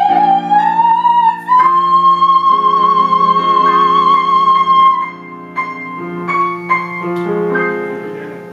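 A woman singing in operatic style with grand piano accompaniment. She slides up to a long, high note with vibrato about a second and a half in and holds it until about five seconds. The piano then continues alone with chords that fade.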